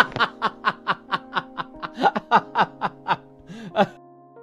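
A person laughing in a rapid run of short 'ha-ha' bursts, about five a second, each falling in pitch, over background music with sustained notes.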